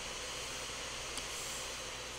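Steady background hiss of the recording's microphone and room, with one faint click about a second in.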